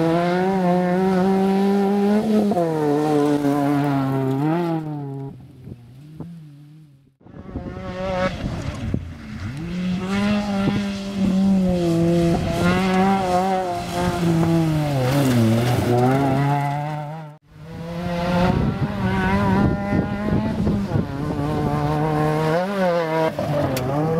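VW Polo rally car's 1600cc engine driven hard on a gravel stage. The revs climb and fall repeatedly with gear changes and lifts off the throttle. The sound fades about five seconds in and drops out abruptly twice.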